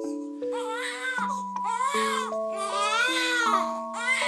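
Newborn baby crying in a series of short, wavering wails that begin about half a second in, over background music of held notes.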